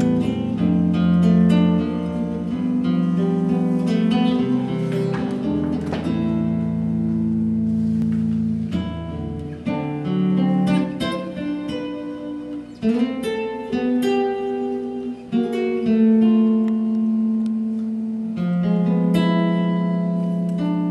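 Guitar played fingerstyle: a picked melody of ringing notes over a bass line.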